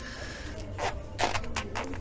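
Hands pulling and tying hockey skate laces on the boot, heard as a few short, scratchy rustles in the second half.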